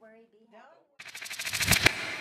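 TV station logo sound effect: a fast rattle of clicks that builds up over about a second and ends in a sharp hit, ringing away afterward.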